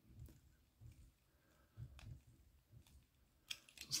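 A few faint clicks about a second apart from a small screwdriver turning a self-tapping screw into a plastic model part, the screw cutting its own thread.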